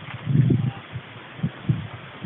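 Wind buffeting the camera's microphone in irregular low rumbling gusts, strongest about half a second in and again near the end.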